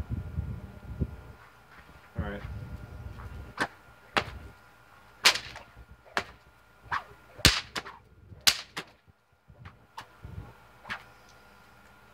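3 ft 16-plait paracord snake whip with a dyneema cracker, cracked over and over: about ten sharp cracks from about three and a half seconds in, uneven in strength, the loudest a little past the middle.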